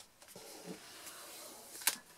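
A folded cardstock box pressed flat by hand on a craft mat: faint rustling of card, with one sharp tap near the end.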